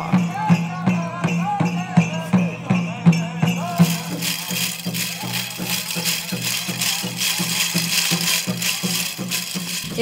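Powwow drum beating steadily with voices singing over it. From about four seconds in, the metal cones of a jingle dress rattle in time with a dancer's steps.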